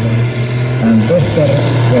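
Pulling tractor's six-cylinder diesel engine running with a steady low drone, heard under an announcer's voice.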